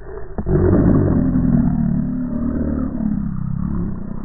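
A loud, muffled engine-like revving roar, an edited-in sound effect with all its treble cut away.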